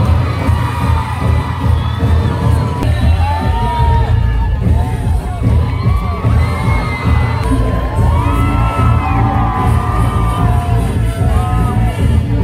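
Loud dance music with a heavy low beat for a costumed street-dance performance, with a crowd cheering and shouting over it.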